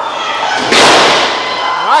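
A wrestler slammed back-first onto the ring mat in a power slam: one loud crash of the ring about three-quarters of a second in, dying away over about half a second.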